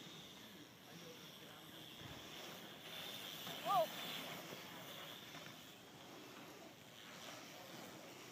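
Faint outdoor noise of BMX bikes rolling on a dirt track, rising a little as riders pass close by, with a short exclamation of 'Oh!' about halfway through as the loudest sound.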